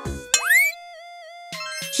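Upbeat children's background music with cartoon sound effects: a quick rising boing-like glide about a third of a second in that settles into a held, slightly wavering tone while the beat drops out, then a falling glide near the end as the beat returns.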